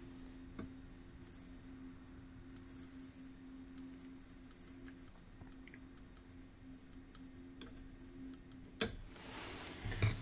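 Faint, scattered clicks of a metal spoon against the beaker and bottle as sodium hydroxide powder is spooned onto a balance, with one sharper click near the end, over a low steady hum.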